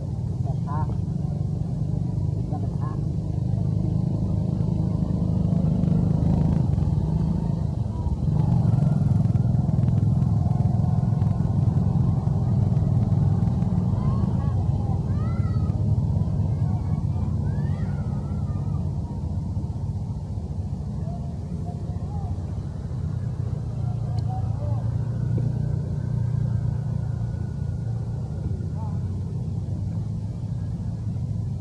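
A steady low engine-like rumble, as from a motor vehicle running nearby, with faint voices or calls over it near the middle.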